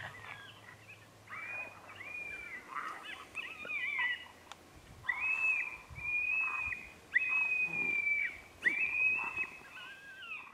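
Coyote distress yelps: about eight drawn-out high-pitched calls in a row, each arching and several breaking off with a falling tail, the longest near the end.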